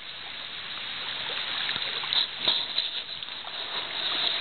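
River water running and rippling close to the microphone: a steady rushing that grows louder, with a couple of faint knocks about halfway through.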